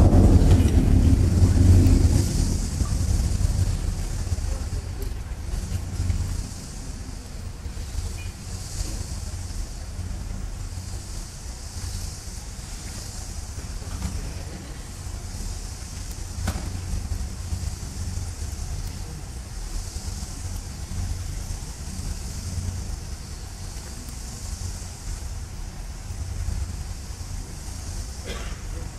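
Concert band percussion: a loud hit rings away over the first few seconds, then a soft, steady low drum rumble continues under an airy hiss that swells and fades several times.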